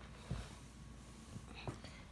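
Faint whispering with a soft low bump about a third of a second in.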